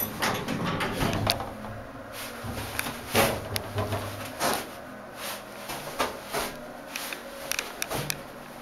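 Hydraulic passenger elevator car under way after the ground-floor button is pressed: irregular light clicks and knocks over a low hum that fades about halfway through.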